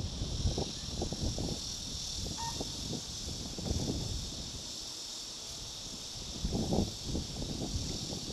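Wind buffeting the microphone in irregular low gusts, strongest near the start and again about six and a half seconds in. Behind it is a steady high insect chorus.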